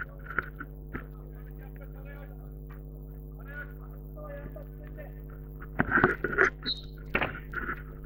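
Players' voices calling out on an outdoor football pitch, faint and scattered at first, then a louder burst of shouting about six seconds in, over a steady electrical hum.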